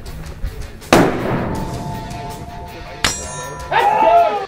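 Sound-effect sting for an animated logo over background music: a sharp metallic clang about a second in that rings on, a second, brighter clang about three seconds in, and a short bending tone near the end.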